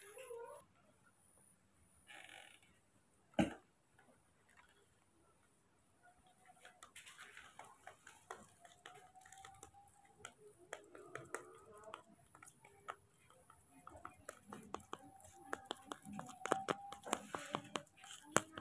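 A spoon stirring and tapping in a small plastic bowl of thick cereal porridge: faint, rapid light clicks and scrapes from about six seconds in, after one sharper knock a few seconds earlier.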